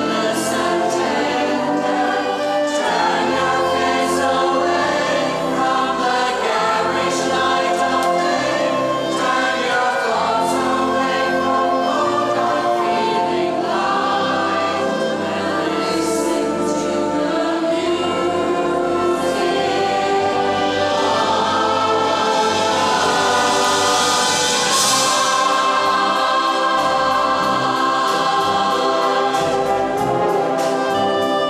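Large mixed choir singing, accompanied by a brass and wind band with clarinets and brass.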